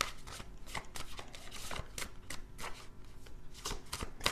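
A tarot deck being shuffled by hand: a quick, irregular run of crisp papery card clicks and flicks.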